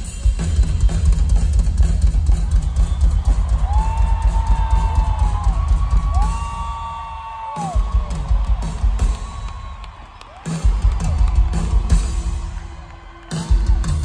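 Live rock drum kit playing fast, with dense bass drum and snare hits and a few short breaks where the low end drops away. Some gliding higher notes sound over the drums in the middle.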